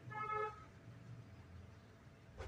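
A single short horn-like toot, about half a second long, near the start, over a low steady background hum.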